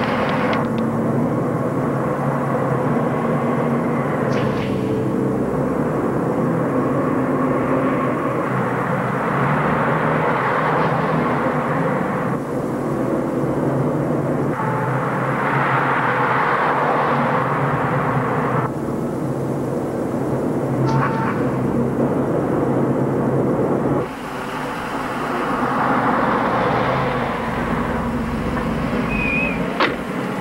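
City street traffic: cars and trucks running and passing, a steady dense noise that shifts abruptly several times. A short higher tone about 21 seconds in, like a car horn.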